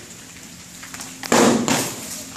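Foam-padded swords striking during a sparring bout: two heavy thuds close together about a second and a half in.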